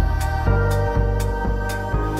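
Background instrumental music with sustained notes over a bass line and a steady beat of about two beats a second.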